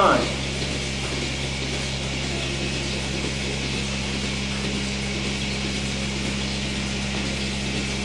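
Steady mechanical hum and hiss of running dairy barn machinery, unchanging throughout.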